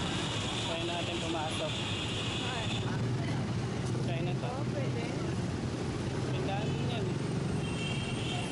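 Busy city street ambience: a steady low rumble of traffic with scattered voices of passers-by. A high, steady whine sits over it for the first three seconds.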